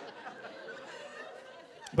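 Faint audience laughter and murmur in a large hall, dying away. A man's voice starts speaking just at the end.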